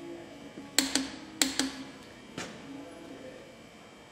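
Sharp metallic clicks of a torque wrench and socket on a head bolt of an IH C-153 engine being torqued to 75 lb-ft: two close pairs of clicks about a second in, then a fainter single click.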